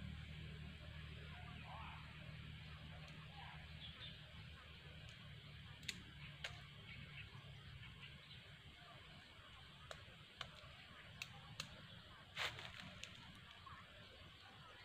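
Faint outdoor background hiss with a low hum that fades over the first few seconds, then a scattering of small sharp clicks and crackles in the second half, the loudest about twelve seconds in.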